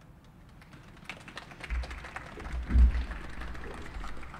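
Stool being pulled into place behind a podium and a child climbing onto it, picked up by the podium microphone: scattered clicks and rustling with low thumps, the heaviest just under three seconds in.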